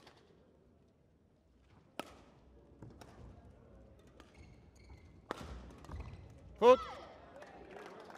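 Badminton rally: a few sharp cracks of rackets striking the shuttlecock, spaced a second or more apart, over the hush of a large sports hall. A loud, short rising squeal about two-thirds of the way through is the loudest sound.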